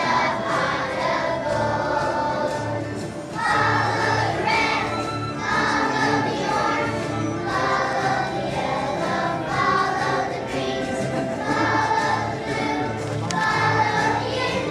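A choir of first-grade children singing together, over an accompaniment with a steady low beat.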